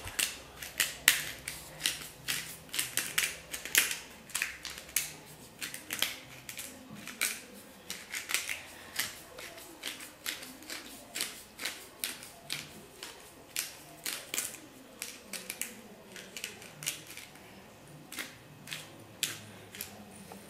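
Pepper mill grinding white pepper: a run of short, dry clicks at about two a second as the top is twisted back and forth.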